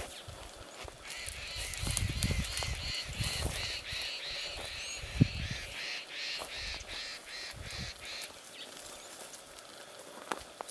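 A bird calling over and over, an even run of about three notes a second that starts about a second in and stops near the end. Low rumbling noise runs underneath, and one sharp knock comes about halfway through.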